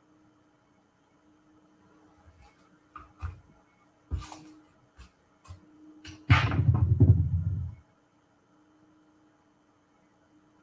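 Handling noises on a work surface: a few light clicks and knocks, then about six seconds in a louder rumbling rustle lasting a second and a half.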